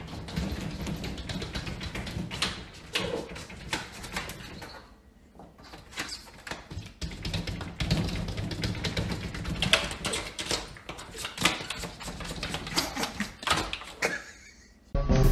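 A cat batting at a glass patio door: a run of irregular taps and knocks on the glass, with a short pause about five seconds in.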